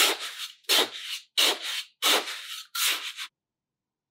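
A small plastic scoop digging and scraping through clumping sand, five short scrapes about two thirds of a second apart, then it stops near the end.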